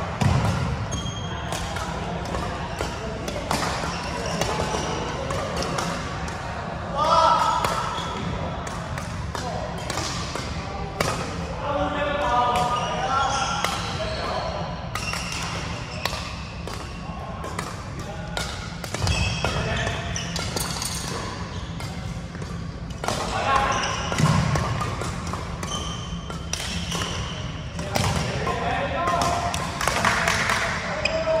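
Badminton rally in a large sports hall: sharp, irregular pops of rackets striking the shuttlecock and players' footsteps on the wooden court, echoing in the hall, with voices in the background.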